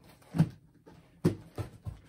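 Cardboard box being rummaged through by hand: a few brief, separate scuffs and knocks as an arm feels around inside it.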